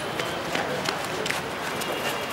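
Footsteps of several people walking on paving, a handful of short irregular steps, over a steady outdoor murmur with faint voices.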